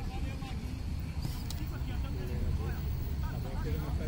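Faint distant voices of players calling out across a football pitch, over a low steady rumble.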